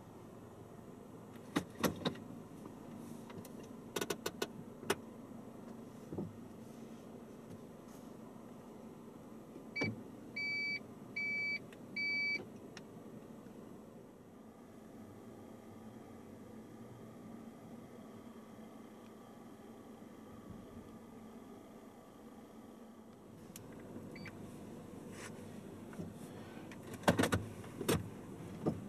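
Inside a parked car with a steady low engine hum, a few sharp clicks are followed by three short electronic beeps about a second apart from the car's navigation unit, then more clicks near the end.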